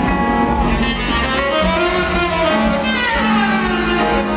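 Live jazz band playing, a saxophone carrying a melodic line with bending phrases over upright double bass and drums.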